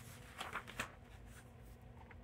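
Faint paper rustles of a picture book's page being turned, a few short soft scrapes in the first second or so.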